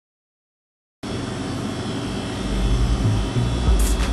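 Silence, then steady shop background noise cuts in abruptly about a second in: a hiss with a low rumble that grows stronger about halfway through, and a brief click near the end.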